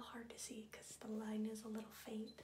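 A woman talking softly in a hushed, near-whispered voice.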